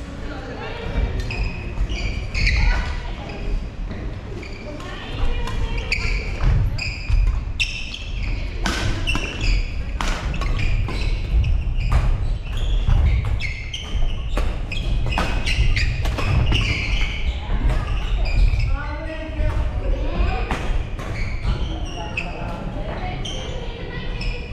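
Badminton rackets hitting shuttlecocks: many sharp hits at irregular intervals from several courts at once, echoing in a large hall.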